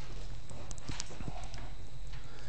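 A few faint footsteps on a hard floor, as light knocks over a steady low room hum.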